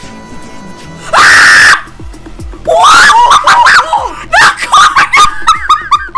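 Young women screaming in excitement, very loud: one long scream about a second in, then a run of high shrieks and squeals from about two and a half seconds on, with pop music and a steady beat underneath.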